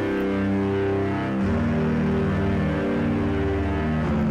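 Background music from a film trailer: sustained low chords held at a steady level, shifting to a new chord about a second and a half in.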